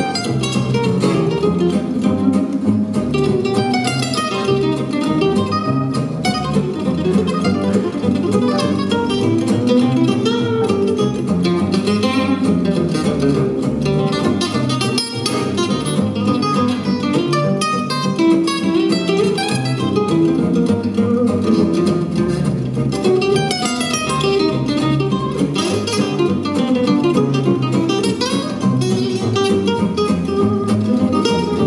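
Live gypsy jazz: an oval-soundhole Selmer-Maccaferri-style acoustic guitar plays quick runs of single notes over rhythm guitar and upright double bass.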